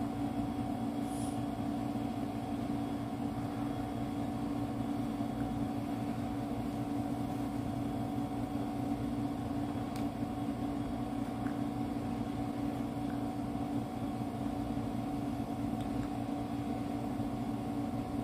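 A steady mechanical hum with a constant low tone, unchanging in level.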